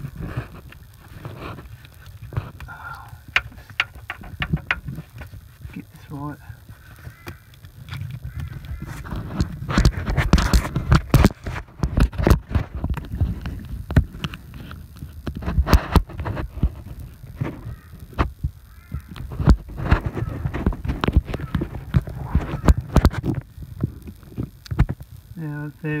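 Close-up handling noise: irregular clicks, knocks and rubbing as a hand and the phone move about among engine-bay wiring and connectors, louder through the middle, over a steady low rumble.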